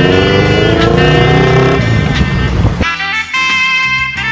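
A motorcycle trike revving hard through a burnout, its engine pitch rising over about two seconds, with spinning-tyre noise. It cuts off suddenly near three seconds in, and background swing music with saxophone takes over.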